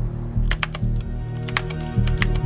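Computer keyboard keys clicking in a few irregular keystrokes starting about half a second in, over background music with a low pulsing beat.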